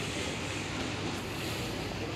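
Steady, even background noise of a railway station platform, with wind on the microphone and no single sound standing out.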